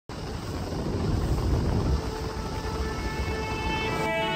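Flats skiff under way over calm water: a fluctuating low rumble of wind and running noise on the microphone. Music fades in over it during the second half.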